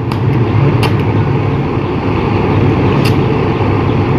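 Arc welder's arc crackling and buzzing as the rod is dabbed against aluminium to heat and melt it, over a steady low hum. There are a few sharper cracks near the start, about a second in and around three seconds.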